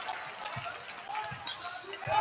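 A basketball being dribbled on a hardwood gym floor: two low bounces a little under a second apart, over the murmur of crowd voices.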